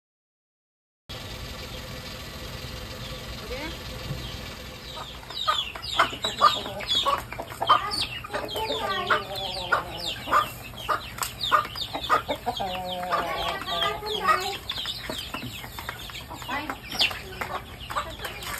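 A flock of chickens, including a rooster, hens and chicks, clucking and calling busily while being fed. The calls start about five seconds in and go on thick and loud, with a few longer pitched calls among them.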